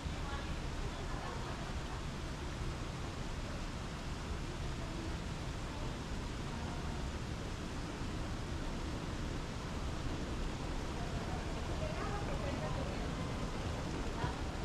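Airport ambience: a steady low rumble with faint, indistinct voices of people nearby, a little clearer near the end.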